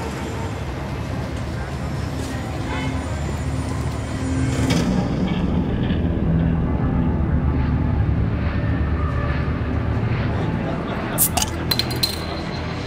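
Steady low rumbling background that grows louder about halfway through, with indistinct murmured voices and a few sharp clinks near the end.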